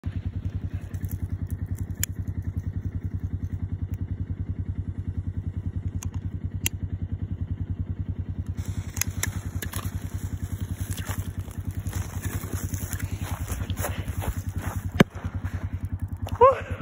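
A firework going off under pond ice: one sharp bang about a second before the end. Under it runs a steady low rhythmic drone like a motor running, with scattered clicks and crackles from about halfway.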